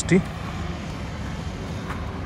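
Steady low rumble of road traffic, a vehicle engine running without a clear rise or fall, after a brief spoken syllable at the very start.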